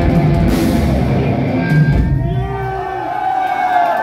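Thrash metal band playing live, with distorted electric guitars and a drum kit, a cymbal crash about half a second in. The band stops about two seconds in and a long held shout follows.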